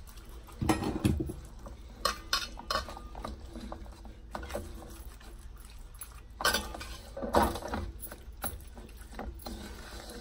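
Hands rubbing marinade into a raw whole chicken in an aluminium tray: wet handling of the skin, with irregular knocks and rattles of the metal tray. The loudest come about a second in, around two to three seconds in, and again around six to seven seconds in.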